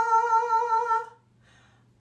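A woman singing a held 'ah' on one pitch with a slight waver, the top step of a rising vocal exercise for practising the flip from chest voice to head voice. The note stops about a second in, followed by a short silence.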